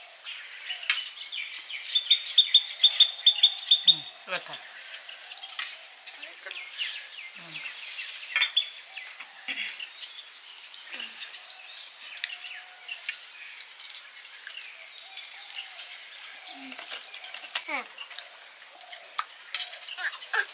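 A small bird gives a quick run of about ten high chirps, about two to four seconds in, over a faint background of short clinks and clicks from steel plates and a serving ladle during a meal.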